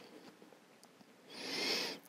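Near silence, then near the end a short, soft breath in, a hiss that swells and fades over about half a second.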